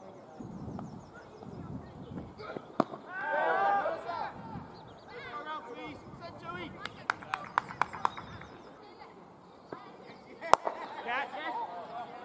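Indistinct calls from cricket fielders, with a quick run of sharp taps a few seconds apart from them. A single sharp crack of bat hitting ball is the loudest sound, about ten seconds in, with more calls after it.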